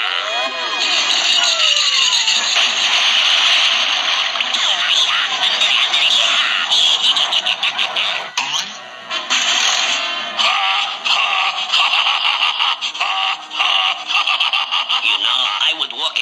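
Cartoon soundtrack: lively orchestral music with sound effects and brief vocal noises from the characters, with sliding-pitch effects in the first couple of seconds.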